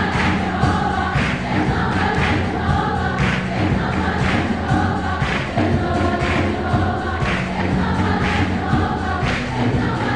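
A choir singing a hymn over instrumental accompaniment, with sustained low notes and a steady beat about once a second.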